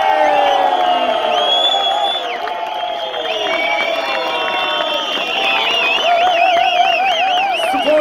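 Crowd cheering and whooping, many voices calling out at once, with a high wavering, warbling call rising above them in the second half.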